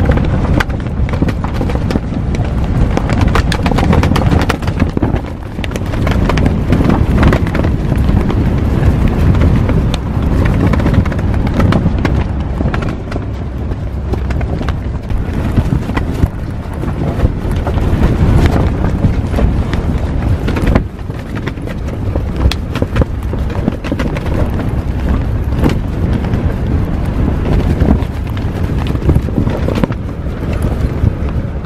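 Storm wind buffeting a car rooftop tent, the fabric flapping and clattering rapidly, with wind hitting the microphone. The gusts ease briefly about five seconds in and again about two-thirds of the way through.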